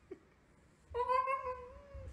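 Husky giving one drawn-out whining call about a second long, starting about a second in, with a very short low sound just after the start.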